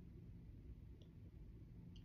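Near silence: room tone with a steady low hum and one faint click about a second in.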